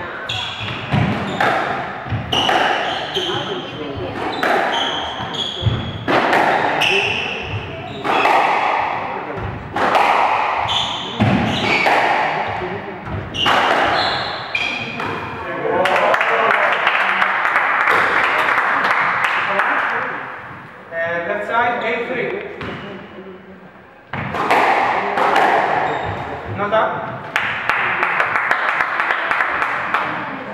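A squash rally: the ball smacks off rackets and the front wall in quick irregular hits, with shoes squeaking on the wooden court floor, echoing in the court. About halfway through the hitting stops and spectators clap and talk, and near the end the hits start again.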